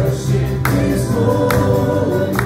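Live worship band playing a gospel song: several voices singing together over acoustic guitars and bass guitar, with a drum hit a little less than once a second.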